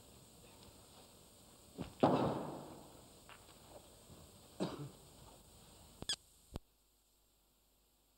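Hushed snooker arena: low room noise broken by a few short clicks and one louder burst about two seconds in that fades away. The sound cuts out abruptly about six and a half seconds in as the recording ends.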